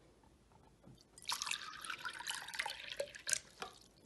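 Water being poured from a jug into a small glass cup, starting about a second in and running for about two and a half seconds with a few splashy spatters.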